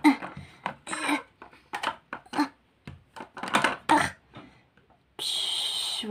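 Scattered light clicks and clatters of plastic toys being handled: a doll and a small plastic toy chair shifted about on a tabletop. Near the end comes about a second of steady hiss.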